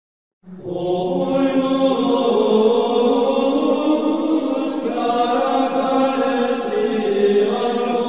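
Chanted voices holding long, slow notes as opening music, starting about half a second in and changing pitch only a few times.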